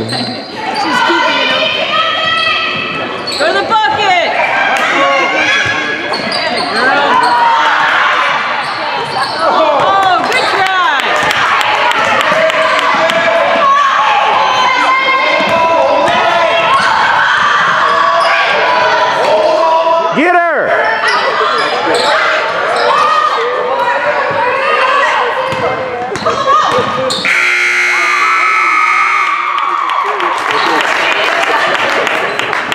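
Basketball game in a gym: ball bouncing on the hardwood court under steady shouting from players and spectators. About 27 seconds in, a steady scoreboard buzzer sounds for about three seconds as the game clock runs out.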